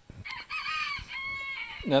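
A rooster crowing once: a wavering opening, then a long held final note.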